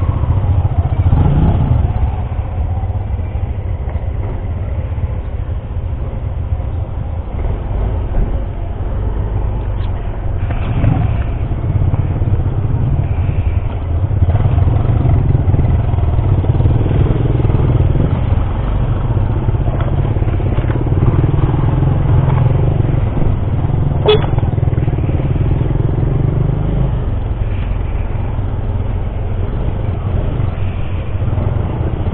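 Yamaha scooter's engine running as it rides slowly, heard as a steady low rumble close to the helmet camera. There is a single short sharp click about 24 seconds in.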